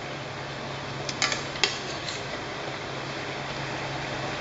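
Metal kitchen tongs clicking against a frying pan a few times, in a short cluster between about one and two seconds in, as chicken pieces are moved around in simmering curry sauce. A steady hiss with a low hum runs underneath.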